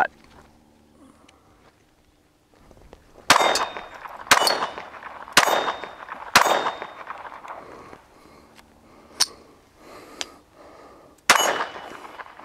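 Browning Buck Mark Camper .22 LR semi-automatic pistol fired: four sharp shots about a second apart, each with a brief ringing tail, then after a pause a fainter crack and one last shot near the end.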